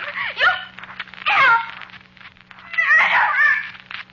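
A woman's voice crying out in three high, wailing cries, the middle one falling steeply in pitch: frightened, hysterical distress.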